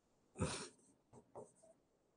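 Faint sounds of a stylus writing on an interactive whiteboard screen: a short scratchy stroke about half a second in, then a fainter tick a second later.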